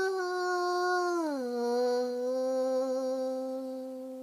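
A woman singing one long held note in a wordless soul-language chant; about a second in it slides down to a lower note, which she holds until it fades near the end.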